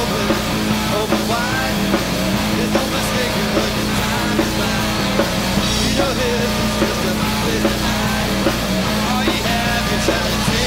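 Live hard-rock band playing at full volume: distorted electric guitar, electric bass and drum kit, with a man singing lead.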